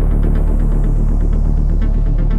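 Dark melodic techno track: a steady, heavy bass throb under fast, even ticking percussion.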